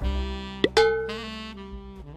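Short comic music sting added in the edit: held wind-instrument-like notes start at once, with a pop and a quick swoop in pitch about two-thirds of a second in, then fade away.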